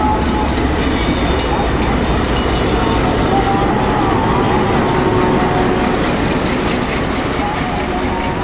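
Hitachi ALCO HBU-20 diesel-electric locomotive running as it pulls a passenger train out of the station past the platform, a loud, steady engine rumble, with the coaches rolling by behind it near the end.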